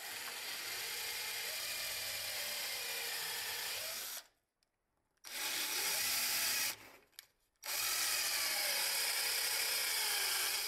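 Power drill boring into the edge of a plywood panel with a long twist bit, in three runs that start and stop abruptly. The motor's pitch wavers as the bit loads up in the cut.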